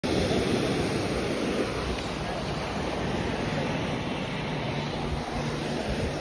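Ocean surf washing onto a sandy beach, a steady wash that is a little louder in the first second or two, with wind rumbling on the microphone.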